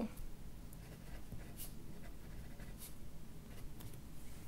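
Pen writing on paper: faint, irregular scratching strokes as two words are handwritten.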